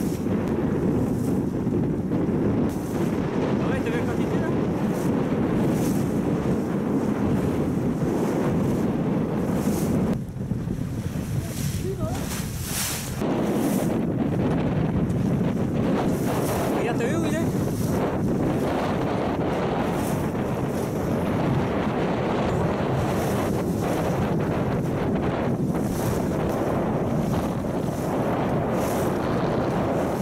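Wind buffeting the microphone over a choppy sea, with waves washing. The steady rush eases for a few seconds about ten seconds in.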